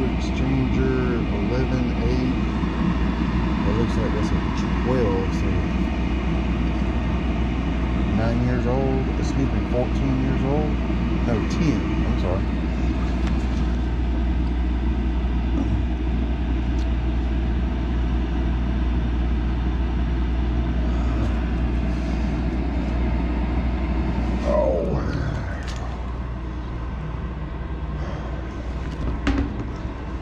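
Steady low mechanical hum from the running Carrier gas pack, with its blower motor not running, under muffled, indistinct talking in the first twelve seconds and again briefly near the end.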